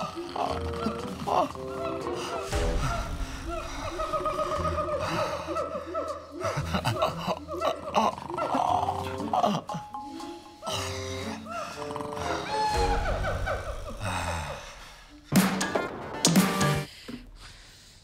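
A jungle-sounds recording of monkeys calling and chattering over music, with a man's deep snoring coming in at intervals, heaviest about three seconds in and again around thirteen seconds. A louder burst of calls comes shortly before the end.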